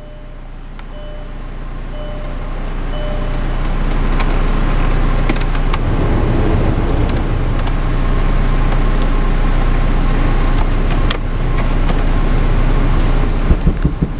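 Heater blower fan of a 2004 VW Jetta running loud. The air rush climbs over the first few seconds and then holds steady, over a low idle hum, with a few clicks from the control knobs. Three short beeps sound about a second apart near the start.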